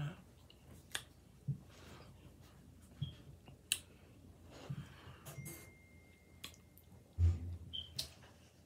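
Close-up eating sounds: chewing a mouthful of burrito, with scattered short mouth clicks and a louder low thump about seven seconds in.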